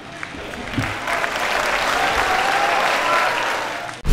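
Audience applauding, building up over the first second and easing slightly near the end.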